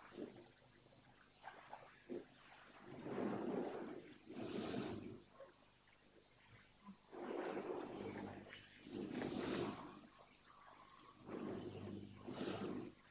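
Heavy breathing close to a microphone: three slow breaths in and out, each breath cycle about two seconds long with pauses of a couple of seconds between them.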